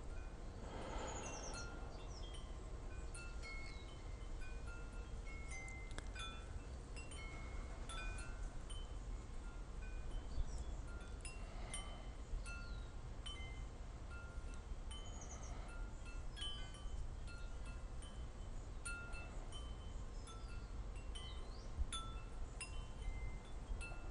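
Wind chimes ringing faintly: irregular, scattered tinkling notes at several different pitches, each fading away, over a low steady background rumble.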